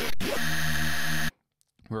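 Xfer Serum software synth playing one held note from a wavetable generated from the word "pigeon", with five-voice unison and an envelope moving the wavetable position. The tone is bright and buzzy, shifts in timbre for its first moments, then holds steady on one pitch. It cuts off abruptly after about a second and a quarter.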